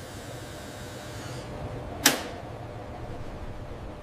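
Quiet, steady low ambient hum with one short, sharp sound, like a click or swish, about halfway through.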